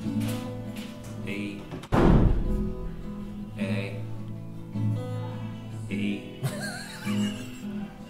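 Acoustic guitar strummed, chords ringing in a steady pattern, with a single loud thump about two seconds in.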